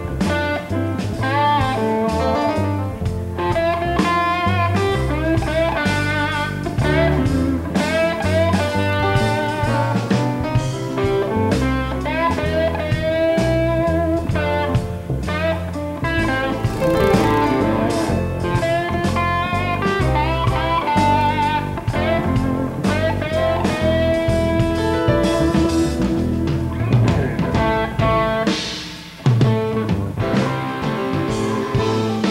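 Live instrumental jazz-rock band playing: an electric guitar solos in bending melodic lines over bass and drum kit. The band drops out briefly near the end, then comes back in with a hit.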